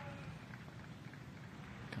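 Faint, steady outdoor background hiss of a golf course, with no distinct events.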